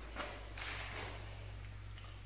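Footsteps shuffling on the shop floor, with a short scuff and then a longer one in the first second, over a steady low electrical hum.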